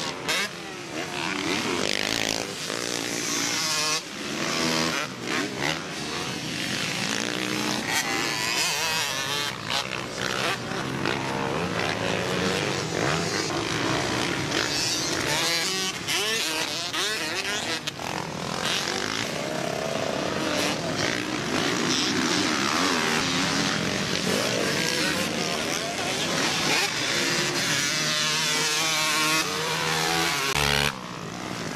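Several dirt bike engines revving up and down as they ride the motocross track, the pitch rising and falling with each change of throttle.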